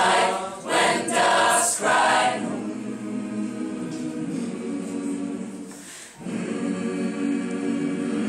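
Mixed choir singing a cappella: a loud sung phrase in the first two seconds, then softer held chords, a brief break about six seconds in, and held chords again to the end.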